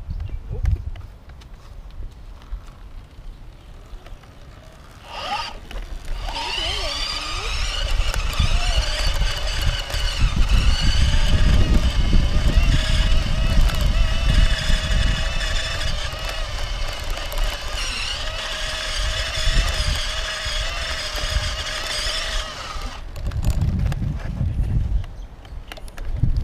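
Electric bike motor whining: it rises in pitch as the bike pulls away about five seconds in, then holds a steady high whine over the low rumble of tyres on a dirt trail, and stops a few seconds before the end.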